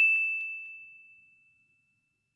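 A single bell-like ding, a transition sound effect on a title card, ringing out one clear high tone and fading away within about a second.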